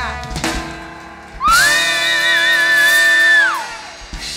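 Trumpet in a live Latin band playing one long high note over a break. The band's last chord dies away first. About a second and a half in, the trumpet scoops up into the note, holds it with a slight waver for about two seconds, then falls off.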